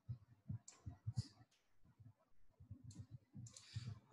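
Faint computer mouse clicks, a few scattered at irregular intervals.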